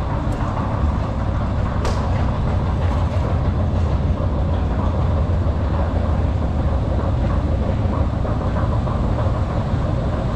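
Long metro escalator running, heard while riding it down: a steady low rumble with a faint rattle. A single sharp click about two seconds in.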